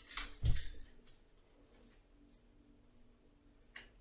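A small pot of vanilla sugar being shaken and tapped over a dish of pudding mix: a few faint taps and rattles in the first second and one more near the end, with quiet in between.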